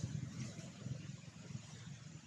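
Low, uneven outdoor rumble, with a few faint ticks above it.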